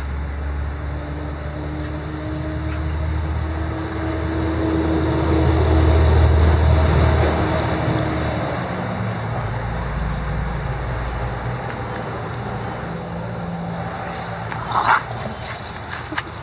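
A Boston terrier and a bulldog playing chase, with one short bark about fifteen seconds in. Under it a low rumble swells to a peak in the middle and then eases.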